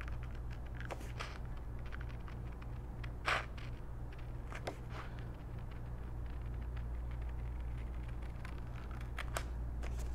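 Small scissors snipping through patterned scrapbook paper in short cuts along a traced line, a handful of faint snips with the clearest about three seconds in, over a steady low hum.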